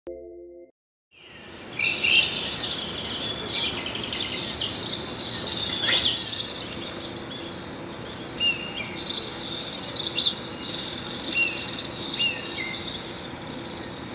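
Small birds chirping and singing, busiest in the first few seconds. From about seven seconds in, a short high note repeats roughly twice a second, with a few falling chirps among it. A brief low tone sounds at the very start, before the birdsong.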